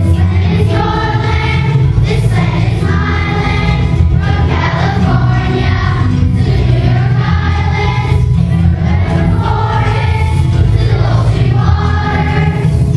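A third-grade children's choir sings in unison over a steady musical accompaniment.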